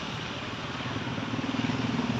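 A vehicle engine running with a low pulsing hum, growing steadily louder.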